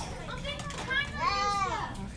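Voices of children and adults without clear words over steady background chatter, with one drawn-out, high-pitched child's voice rising and then falling in the second half.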